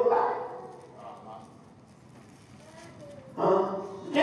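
A man preaching into a microphone: a phrase trails off, a quieter pause of about two and a half seconds follows, then a short loud burst of his voice comes near the end.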